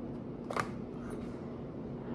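A single sharp plastic click about half a second in as the football helmet's visor is handled, over a faint steady hum.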